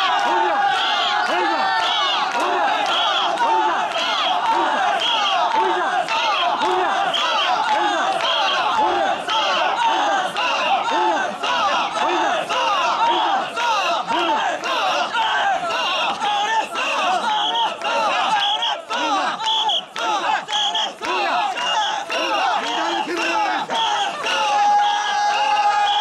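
Crowd of mikoshi bearers shouting a rhythmic carrying chant in unison while shouldering a portable shrine, many voices overlapping in a steady repeating beat.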